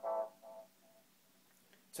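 Electric guitar through a Line 6 Spider IV 15 amp, the amp's tape echo repeating the last notes a few times, each repeat quieter, dying away about a second in.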